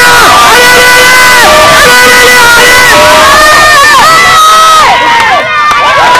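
Spectators shouting and cheering encouragement in many overlapping, long drawn-out calls, very loud. There is a brief lull about five seconds in.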